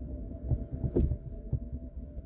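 Inside a slowly moving car: low rumble of the road and engine with irregular soft thumps from the bumpy surface, under a steady hum. A sharp click comes about a second in.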